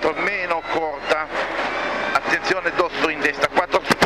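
Cabin sound of a Mitsubishi Lancer N4 rally car at speed: engine running hard, with tyre and road noise. Over it the co-driver's voice is calling pace notes.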